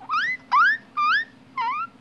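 Guinea pig wheeking: four high squeals in a row, each rising in pitch, about two a second.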